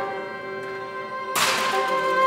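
String quartet holding a quiet sustained chord, broken about 1.3 seconds in by a single sudden sharp crack that fades within about half a second.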